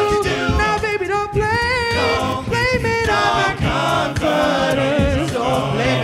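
All-male a cappella group singing into microphones: a lead voice with vibrato over sustained backing harmonies and a low bass part.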